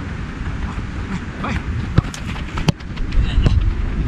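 Wind buffeting the microphone, with a few sharp thuds of a football being struck during a one-touch passing and shooting drill.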